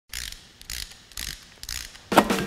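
Logo sound effect: four short, sharp mechanical bursts, about half a second apart.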